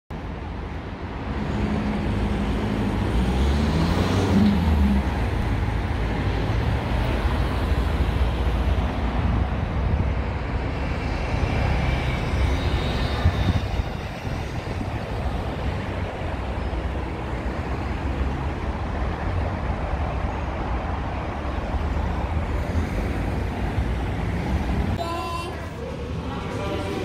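Road traffic running past on a busy street, a steady rumble of vehicle engines and tyres, with one vehicle's engine standing out a few seconds in.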